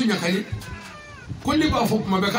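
A man preaching over a microphone stops about half a second in. During the pause a faint, high cry falls in pitch, and then the preaching resumes.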